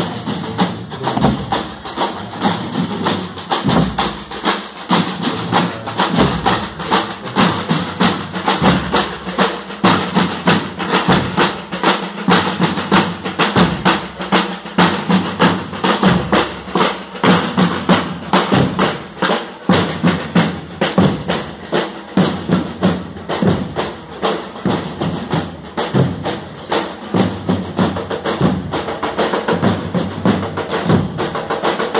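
A marching band's drum section playing a steady marching beat: rapid snare drum strokes over regular deep bass drum beats, repeating evenly throughout.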